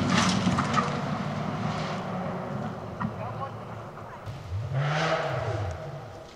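Toyota GR Yaris rally car's engine pulling away along a gravel stage, its note fading into the distance. About five seconds in, an engine revs up and back down.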